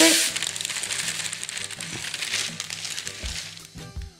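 Baking paper rustling and crinkling as crushed biscuit crumbs slide off it into a small glass bowl. It is loudest at the start and fades over the next few seconds.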